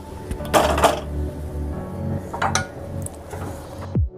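Cookware being handled on a gas stove: a few short clatters as a pan is set onto the burner grate, over steady background music.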